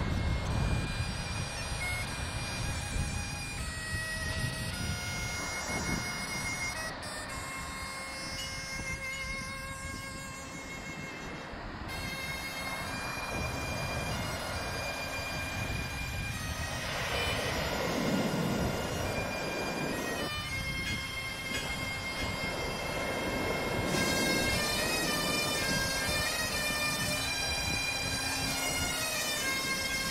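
Bagpipe music, held drone notes under a melody, laid over a steady rush of surf that swells briefly about 17 seconds in.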